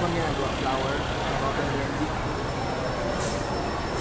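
Cotton candy machine running, its spinner head giving a steady whirring rumble as floss is wound onto a stick, with a thin high tone coming in about halfway.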